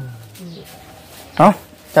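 Speech: short spoken phrases with a pause between them.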